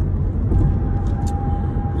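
Steady low rumble of a car heard from inside the cabin. A faint steady tone comes in about half a second in.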